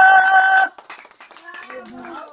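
A singer's long held final note, ending abruptly under a second in, followed by light applause from a small group and voices.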